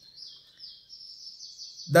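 A bird twittering faintly in the background: a thin, high-pitched, warbling chirping that keeps going through the pause and is then covered by speech near the end.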